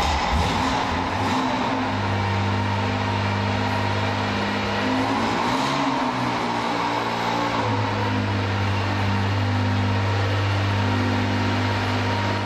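Classic Porsche 911's air-cooled flat-six engine idling steadily, with a brief wavering in engine speed about halfway through.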